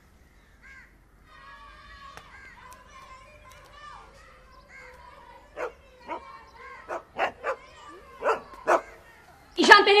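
A dog barking, a run of short, sharp barks in the second half, over faint background voices.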